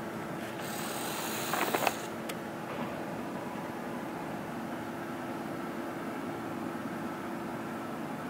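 Steady hum and hiss inside a stationary car's cabin, with a brief band of higher hiss in the first two seconds.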